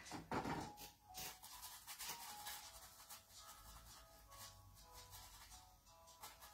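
Faint soft background music, with light scratchy rubbing strokes of a dry flat brush pushed and twirled on canvas.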